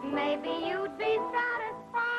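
A woman singing a sentimental popular song, her line bending up and down in pitch from word to word.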